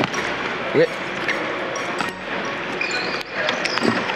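A wheelchair rugby ball bouncing on a wooden gym floor as a player dribbles it beside his moving sport wheelchair, several bounces at uneven intervals.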